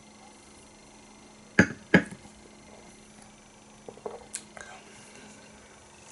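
A man drinking beer from a stemmed glass: two loud gulps close together about a second and a half in, then a few small knocks and a light glass click as the glass is set down on the table, over a faint steady hum.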